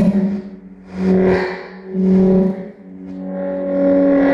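Saxophone with electronically processed train recordings: a held low note with rich overtones that swells and fades about once a second, with hissy peaks on each swell.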